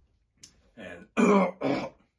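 A man clearing his throat in three rough pushes in quick succession, the middle one loudest.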